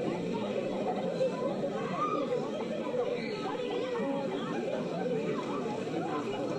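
Many voices chattering at once in a steady babble, with no single voice standing out.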